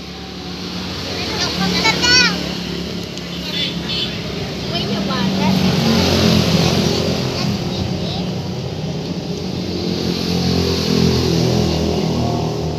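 A motor vehicle engine running close by, growing louder over the first half and then holding steady.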